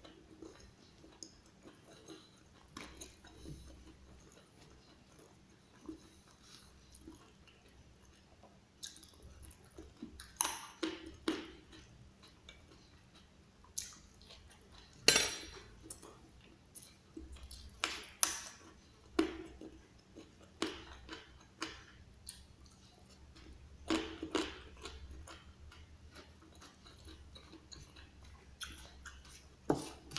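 Eating sounds: chewing of raw leunca (black nightshade) berries and rice, with irregular sharp clicks and scrapes of a metal spoon on the food and leaf plate, busiest and loudest in the middle stretch.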